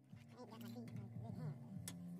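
Faint, indistinct voices with a single sharp click near the end.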